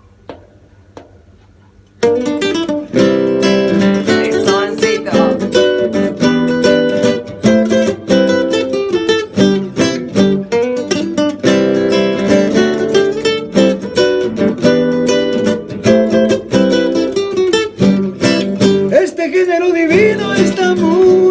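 Acoustic guitar strummed in a driving rumba flamenca rhythm, starting loud about two seconds in after a brief quiet moment with a few faint clicks. The strokes are sharp and closely packed.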